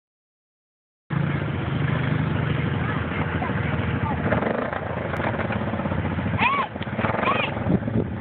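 Quad ATV engine running as it drives off across a muddy field. The sound starts about a second in, with the engine's steady hum strongest over the first few seconds and then fading as it moves away.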